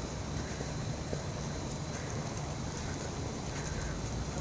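Steady low rumble of wind on the phone's microphone, with a faint outdoor hiss.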